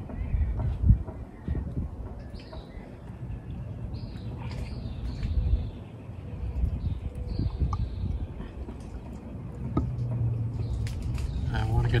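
Outdoor ambience: wind rumbling on the microphone, with a few faint short chirps and some small clicks, and a low steady hum coming in about two seconds before the end.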